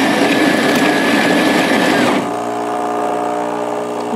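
Superautomatic espresso machine's built-in grinder grinding beans for a shot: a steady whir with a high whine, which cuts off about two seconds in. A lower, steady hum of the machine's pump then takes over as brewing begins.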